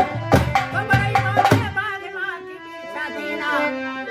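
A dholak drum plays a quick rhythm over harmonium for about the first two seconds, then stops. After that a man's voice sings a wavering folk melody in nirgun bhajan, birha style over held harmonium notes.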